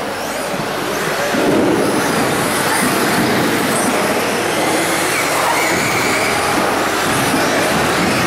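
Several 1/10-scale electric 2WD RC buggies racing on a carpet track: a steady mix of motor whine and tyre noise, with faint rising whines as cars accelerate out of corners.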